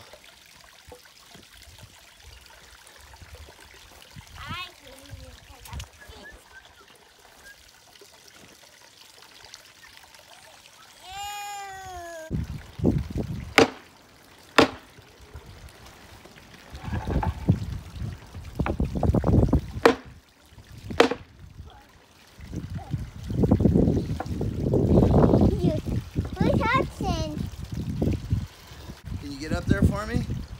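Hammer blows on a scrap board laid over an ash-slab bench top, knocking the slab down onto its log legs' tenons because it is still moving. A few sharp strikes start about halfway through, followed by stretches of heavier, repeated thumping, over the steady trickle of a small pond waterfall. A child's voice calls out briefly before the hammering begins.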